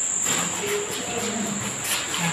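Crickets chirring in one steady high-pitched tone, with faint voices underneath.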